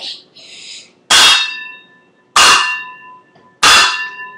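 Two metal saucepans banged together like cymbals: three loud clangs about 1.3 seconds apart, each ringing on with a few clear metallic tones that fade over about a second.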